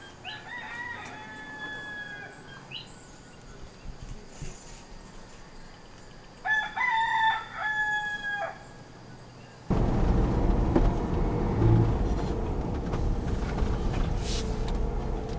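A rooster crowing twice, the second crow louder. After about ten seconds the sound cuts to the steady low road and engine noise of a car heard from inside the cabin.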